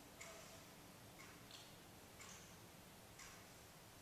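Faint ticking about once a second from a wall clock, over near-silent room tone.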